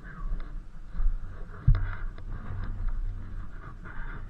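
Wind buffeting the microphone in a low, uneven rumble during an electric unicycle ride, with scattered light clicks and one sharp knock a little under two seconds in.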